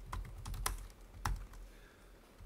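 Keystrokes on a laptop keyboard: several separate taps spread over the first second and a half.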